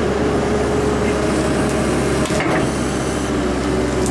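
Excavator's diesel engine running steadily under load as the bucket works through peat and fallen timber, with a brief knock about two and a half seconds in.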